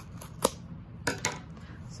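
Scissors snipping through yarn wound around a piece of cardboard: a sharp snip about half a second in, then two or three more quick snips just after a second.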